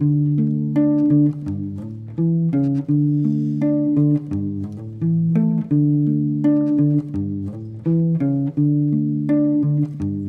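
Solo guitar fingerpicked without singing: a repeating figure of single plucked notes over changing bass notes, at a steady pace.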